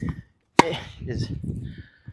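Tennis ball struck by a racket strung with Kirschbaum Flash 1.25 mm string: one sharp pop a little over half a second in.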